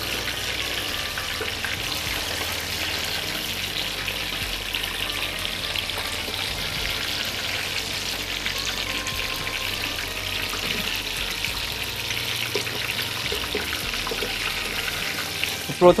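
Mushrooms deep-frying in hot oil in a pan over high heat: a steady, crackling sizzle, with a slotted spoon stirring them in the oil.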